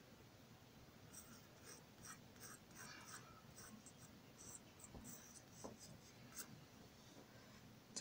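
Faint scratching of a pencil on paper in a series of short, light strokes, sketching in a rough outline.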